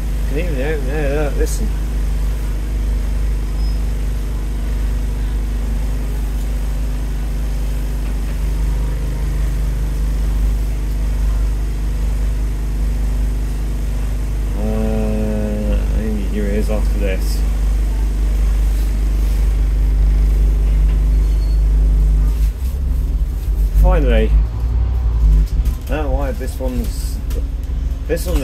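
Diesel engine of a Scania N230UD double-decker bus running at idle, a steady low rumble heard from the upper deck, which gets louder and more uneven near the end as the bus pulls away. Voices are heard now and then over it.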